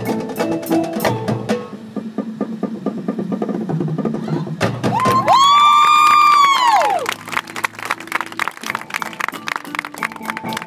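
Marching band with front-ensemble percussion playing: rapid drum and mallet strokes throughout. About five seconds in, a loud chord slides up in pitch, holds for about two seconds and slides back down. This chord is the loudest moment.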